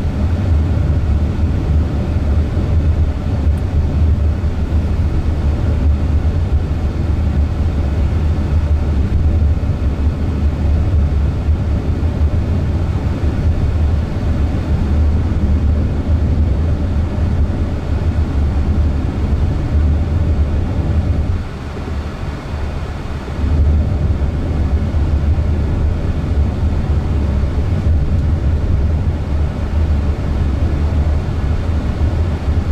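Road and tyre noise inside the cabin of a Waymo Jaguar I-PACE, an electric car, driving along a city road. It is a steady low rumble that eases for a couple of seconds about three-quarters of the way through.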